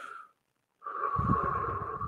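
A man taking deep, audible breaths close to the microphone as a deliberate meditation breath. One breath fades out just after the start, and after a brief pause a longer breath begins about a second in.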